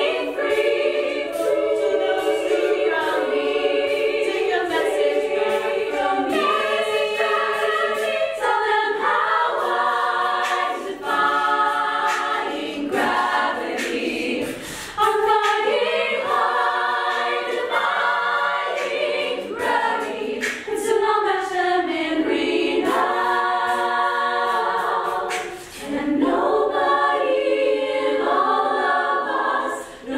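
Women's a cappella choir singing in harmony, with brief pauses between phrases.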